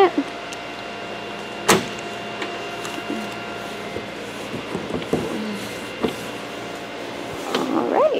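A 2010 Ford Fusion's trunk being opened: one sharp click about two seconds in, then a few faint knocks as the lid comes up, over a faint steady hum.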